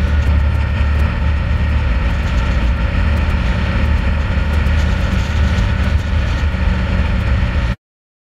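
Snowmobile engine running steadily under way, loud and even with a low drone and scattered clicks; it cuts off suddenly just before the end.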